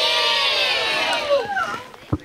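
A group of children's voices calling out together, many high voices overlapping at once, dying away near the end.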